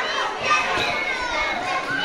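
A crowd of children shouting and calling out together, many high voices overlapping in a steady din.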